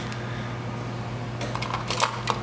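Steady low room hum, with a few light clicks of clear acrylic case parts being handled near the end.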